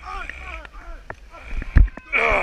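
Fighters shouting and yelling in a mock melee battle, with a heavy thump near the end.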